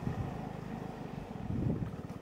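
Motorbike engine running at low speed while rolling along a gravel dirt track, with some wind on the microphone.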